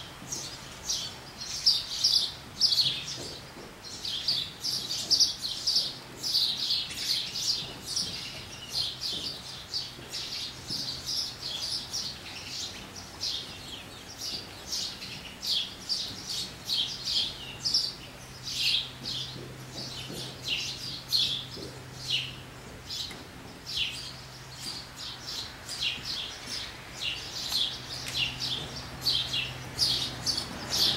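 Small birds chirping over and over in quick, irregular short calls, with a faint steady low hum underneath.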